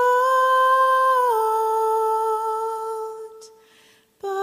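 A woman's voice, unaccompanied, holding one long note that steps down slightly in pitch about a second in, then fades away near the end.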